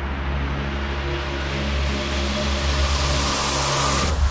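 Electronic intro build-up: a sustained low synth drone under a rising noise sweep that swells brighter and cuts off sharply at the end.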